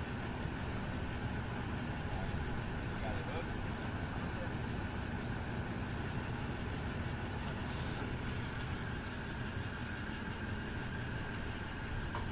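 A motor engine idling steadily, a low even hum.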